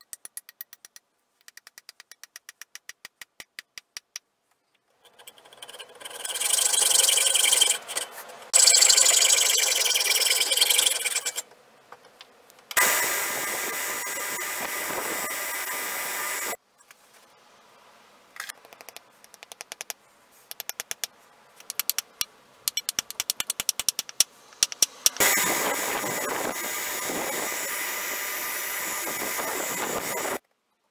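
Belt sander running in three stretches of several seconds, the loudest near the start while a wooden handle is worked against the belt. Between the stretches come runs of rapid, even clicking.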